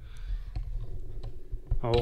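Low rumble of a handheld camera being moved, with a few light clicks, then a man starts speaking loudly near the end.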